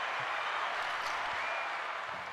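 Recorded applause played as a sound effect: steady, even clapping that tails off slightly near the end.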